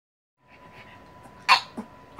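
A pug sneezing once, sharply, about one and a half seconds in, followed by a quieter short second burst.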